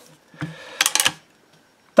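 Sharp metallic clicks from handling a Henry .22 LR lever-action rifle's action: one click about half a second in, then a quick cluster of clicks around a second in.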